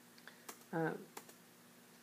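Three sharp clicks of computer input while a text box is placed on the slide: one about half a second in, then two close together past the one-second mark, over a faint steady hum.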